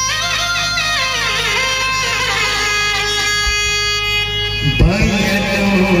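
Electronic keyboard playing an amplified melodic lead line that slides and bends between notes. About five seconds in, after a thump, a man starts singing into the microphone.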